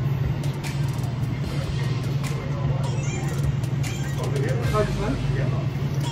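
A steady low machine hum with scattered light clicks and clatter at a drinks counter, with people talking from about four seconds in.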